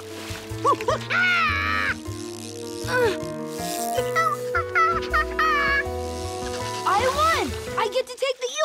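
Cartoon background music with held notes, over which a cartoon monkey makes short, high, worried vocal sounds that rise and fall.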